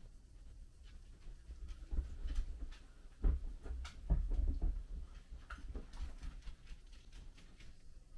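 A cloth rubbing back and forth over a Kubey Anteater folding knife's steel blade, polishing at rust spots: a run of short scratchy strokes with dull bumps from handling, loudest about three to four seconds in.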